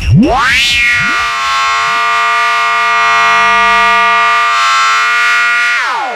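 Hardcore techno breakdown with the kick drum dropped out: a thick synthesizer chord sweeps up in pitch within the first second, holds steady, then slides down near the end.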